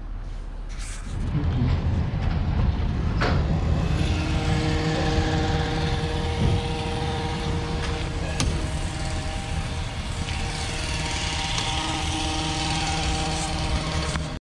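A car engine running steadily, a low rumble, with a steady hum joining it about four seconds in.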